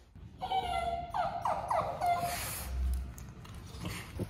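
A dog whining: a run of high, wavering whines lasting about two seconds, followed by a brief rustle.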